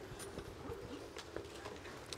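Faint background noise with a few scattered light taps and rustles, as of people moving and handling things close to the microphone.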